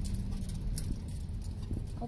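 Low, steady rumble of a car's engine and tyres heard from inside the cabin, with a couple of light clicks, the first just under a second in and the second about a second and a half in.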